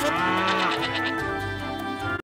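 A cartoon cow moos once in the first second, a sound effect laid over steady background music.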